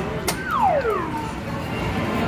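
Coin-op boxing arcade machine: a sharp knock from its punching bag, then the machine's electronic sound effect, a tone falling steadily in pitch for about half a second.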